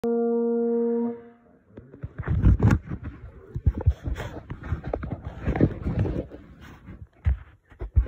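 A single held brass note, steady in pitch, lasting about a second and then cut off. After it come irregular close-up rustling and low knocks of handling noise on the recording device.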